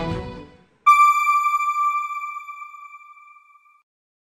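Background music fades out in the first half second. About a second in, a single bell-like electronic chime strikes and rings down over nearly three seconds, the ident sound of a TV channel's end card.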